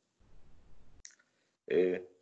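A pause in a man's speech over a video-call link: faint low background noise, then one brief click about a second in, then his voice starts again near the end.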